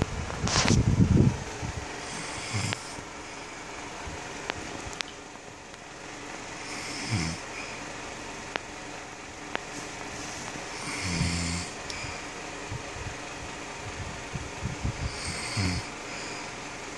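A sleeping man snoring, one rattling low snore with a breathy hiss roughly every four seconds; the loudest is a longer rumble about a second in.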